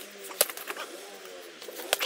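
Punches landing on a hanging heavy bag: one sharp hit about half a second in, then a quick pair of hits near the end.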